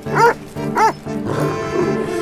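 A dog barking twice, about half a second apart, over orchestral film music.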